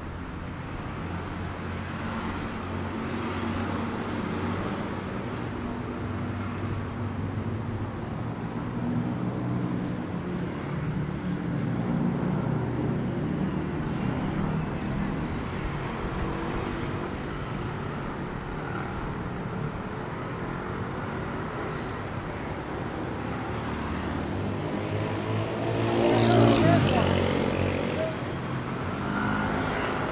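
City street traffic: car and motor scooter engines running and passing at road speed. One vehicle passes close near the end, the loudest moment, its engine pitch sweeping as it goes by.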